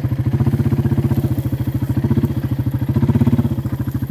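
Four-wheeler (ATV) engine running steadily at walking pace while towing a round hay bale on a tow strap, with a fast, even pulse that swells slightly about three seconds in.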